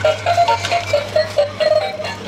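Battery-powered dancing monkey toy playing its electronic tune through its small built-in speaker: a quick melody of short beeping notes over a steady low hum.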